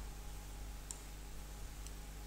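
Two faint, sharp clicks about a second apart, from a hand or pen tapping an interactive touchscreen board, over a steady low electrical hum.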